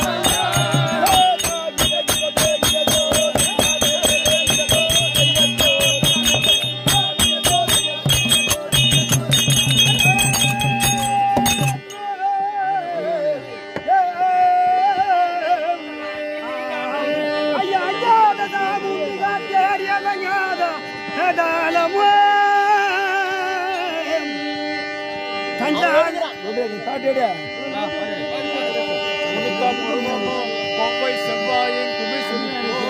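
Therukoothu ensemble music: fast, dense percussion over a steady drone. The percussion stops abruptly about twelve seconds in, leaving a wavering melody over the drone.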